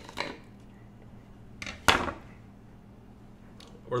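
Kitchen knife slicing through a jalapeño on a wooden cutting board, with a light click early and two sharp knocks of the blade on the wood a little under two seconds in.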